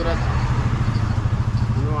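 A motor vehicle's engine idling close by: a steady low rumble with a fast, even pulse.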